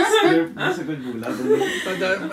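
A woman laughing, with a man's lower voice chuckling along.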